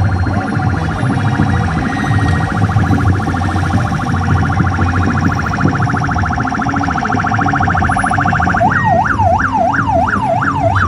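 Electronic vehicle siren sounding a fast warble, switching near the end to a slower up-and-down yelp, over a steady low rumble of traffic.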